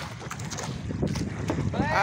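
Wind buffeting the microphone over open sea on a small fishing boat, a steady rough rushing noise. A voice breaks into a laugh near the end.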